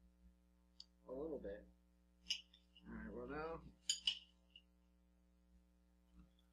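Metal spoons clinking against cereal bowls while eating: a few sharp, separate clinks, the loudest a quick pair about four seconds in. Two short murmured voice sounds come between them.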